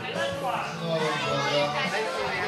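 Children and adults chattering over one another in a hall, with music playing behind them.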